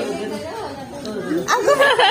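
Indistinct talk and chatter of several voices, with a louder, high-pitched voice coming in about one and a half seconds in.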